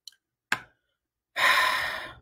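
A small mouth click, then a long audible sigh, breathed out close to the microphone in the second half.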